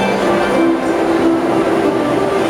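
Two harps played together in a duet, ringing notes held in the middle register, over a steady background din.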